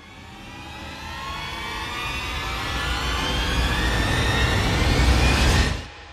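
A rising sound effect: a rush of sound whose pitch climbs steadily over deep bass. It grows louder for about five and a half seconds, then cuts off suddenly.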